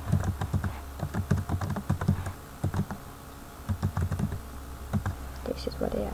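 Computer keyboard typing: quick runs of keystrokes with short pauses between them.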